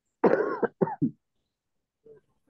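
A person clearing their throat over a video call: one longer rasp followed by two short ones, over within about a second.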